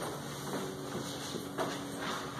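Dry-erase marker drawing lines on a whiteboard: faint rubbing strokes over a low steady room hum.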